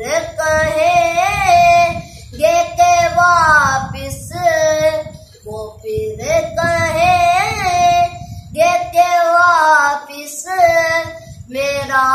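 A boy singing a naat unaccompanied, in long held melodic phrases with wavering ornaments on the notes, broken by brief pauses for breath.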